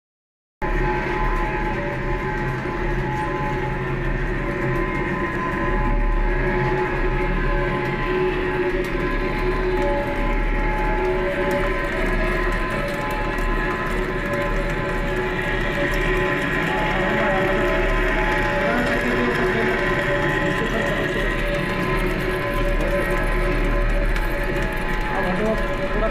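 Large lathe cutting rope grooves into a steel crane rope drum: a steady machining noise with a low hum and several sustained ringing metallic tones.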